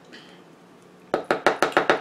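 A quick run of light, sharp taps, about eight or nine a second, starting about a second in: a spice being shaken out of a shaker container and tapped off a measuring teaspoon over a glass mixing bowl.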